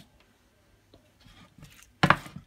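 Near silence: room tone with a faint low hum and a few faint ticks near the end.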